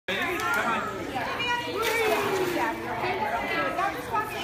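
Overlapping chatter and calls of young children and adults in an indoor swimming pool, with water splashing underneath.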